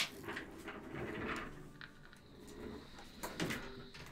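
Online slot game sound effects as a free spins bonus is triggered: a click, then a whooshing transition with a faint steady high tone in the middle.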